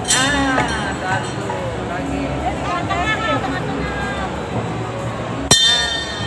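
A metal bell rung twice, once at the start and again about five and a half seconds in. Each ring is sudden and bright, its tone wavering as it rings on for about a second.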